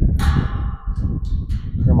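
A sharp metallic clang that rings on for about a second, over a steady low rumble.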